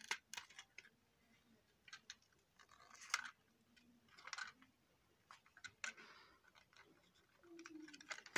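Near silence broken by faint, scattered clicks and light rustles, the clearest about three seconds in and again a second later.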